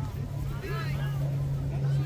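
A steady low engine-like hum with one brief break, with faint distant calls of voices over it.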